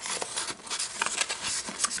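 Paper rustling and rubbing as the pages and tags of a handmade junk journal are handled, with a few light clicks.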